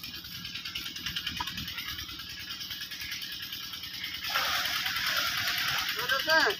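Steady crackly outdoor noise, then from about four seconds in a louder rushing hiss as liquid is poured into a large iron cooking pot over a wood fire.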